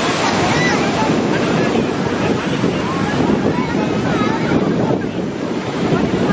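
Wind buffeting the microphone over rushing river water, a steady noise throughout, with faint distant voices calling now and then.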